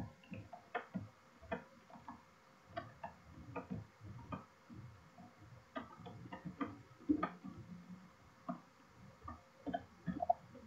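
Computer keyboard typing: faint, irregular key clicks.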